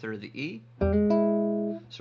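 Archtop electric guitar, finger-picked: a note plucked about a second in, joined a moment later by a second note, the two ringing together for about a second as a short blues phrase.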